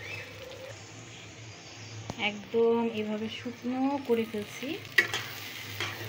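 Potato curry frying and sizzling in a pot on the stove as it is cooked down in oil and spices. A voice speaks briefly in the middle, and there is a sharp clack about five seconds in.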